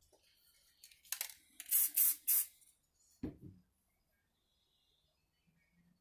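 A few short hissing bursts of spray, three of them close together, followed by a single knock.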